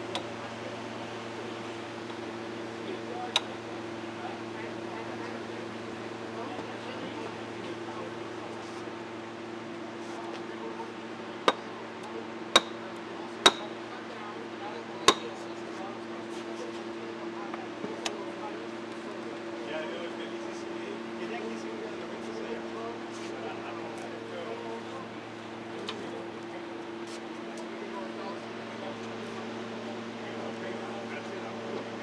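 Steady low hum of electrical power equipment running under a 100 kW load. A few sharp metallic clicks come as the cam-lock cable connectors and meter leads at the panel are handled: one early, then four close together about halfway through.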